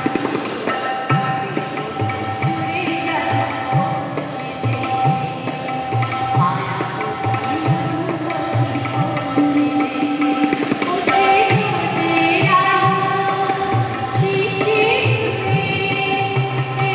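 A woman singing an Indian vocal line, accompanied by tabla whose bass-drum strokes slide upward in pitch, over a steady held drone note.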